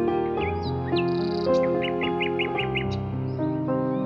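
Slow, gentle piano music with birdsong laid over it: a small songbird calls, with a quick run of about seven repeated chirps starting about a second and a half in.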